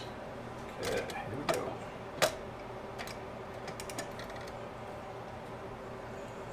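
Sharp metal clicks and taps from a hinged jig mold being handled for a lead pour. The loudest click comes about two seconds in and lighter ticks follow, over a steady low hum.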